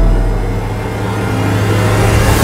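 Car engine running as the car pulls away, a steady low hum that grows louder near the end.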